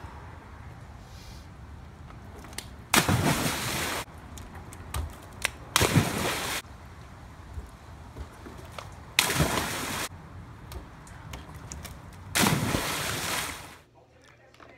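Four big splashes of a person jumping and flipping into an above-ground backyard pool, each lasting about a second, spaced about three seconds apart.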